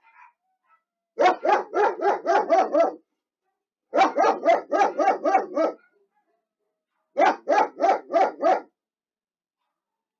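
A dog barking in three quick runs of about eight barks each, roughly five barks a second, with short silences between the runs.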